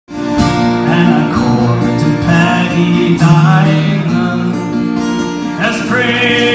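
Two acoustic guitars played together in a folk song, strummed chords with picked notes, starting just after the clip begins.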